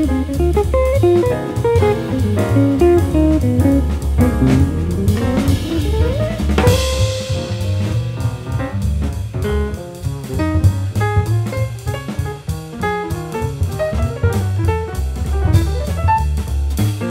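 Jazz combo playing, led by a semi-hollow electric guitar solo of quick single notes over walking bass and a drum kit. About six seconds in, the guitar climbs in a rising run that lands on a cymbal crash, and a note is held briefly before the solo goes on.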